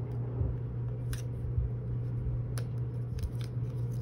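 Washi tape and a paper gift tag handled by hand, giving a few short crinkles and clicks about a second in and again in the second half, over a steady low hum.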